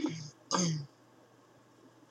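A woman clearing her throat in two short rasps in quick succession.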